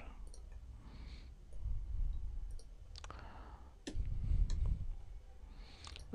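A handful of sharp, scattered computer mouse and keyboard clicks, with two short stretches of low rumble about two and four seconds in.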